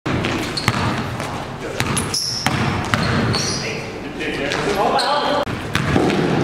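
Pickup basketball game in a gym: the ball knocking on the court at irregular intervals, sneakers squeaking on the floor, and players' voices.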